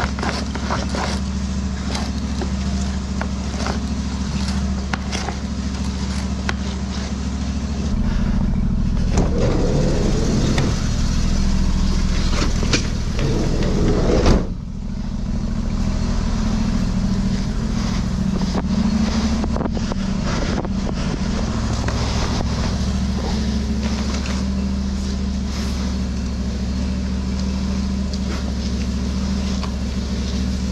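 Drain jetter's engine running steadily with a low hum. A few quick knocks come early on, and a louder rushing noise swells around the middle and cuts off suddenly.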